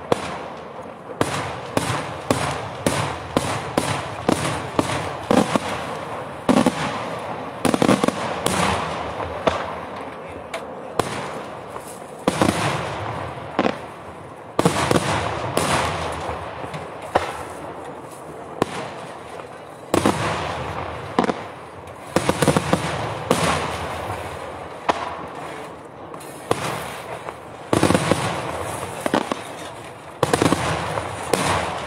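Daytime display fireworks exploding overhead: a continuous, irregular barrage of sharp, loud bangs, sometimes in quick clusters, each trailing off in a short echo.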